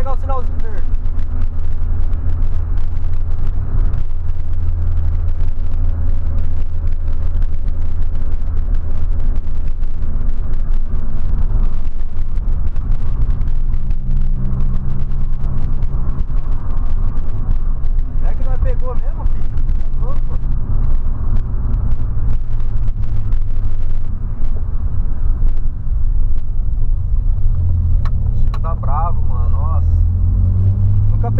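Cabin sound of a 2008 Volkswagen Polo sedan being driven: a steady low engine hum and road noise. The engine note changes pitch a few times as the car changes speed.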